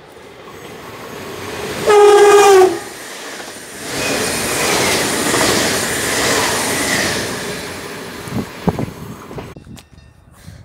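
NS double-deck electric train sounds one horn blast of just under a second as it approaches, then runs past along the platform with a loud rush of wheel and rail noise that swells and fades, ending with a few knocks of wheels over the rails.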